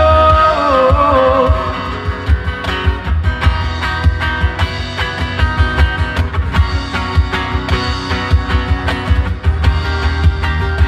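A live band playing a slow rock song: a held, wavering sung note in the first couple of seconds, then an instrumental passage of guitar over a steady percussion beat.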